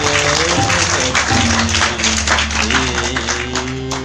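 Harmonium holding sustained closing notes of the song under audience applause, the sound fading out at the very end.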